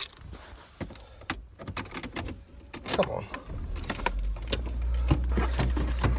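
Keys jangling and clicking, with small handling knocks inside a car. A low steady car-engine rumble comes in about four seconds in.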